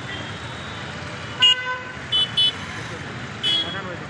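Street traffic with vehicle horns honking: one longer horn about a second and a half in, two short toots soon after, and another horn near the end, over the steady noise of passing vehicles.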